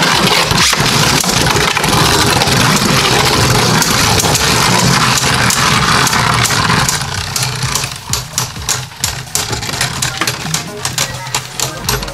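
Two Beyblade Burst Turbo tops, Hercules H4 and Salamander S4, spinning in a plastic BeyStadium: a loud, steady whirring grind of their tips on the plastic floor. About seven seconds in it breaks into rapid clicking and rattling as the tops slow and wobble.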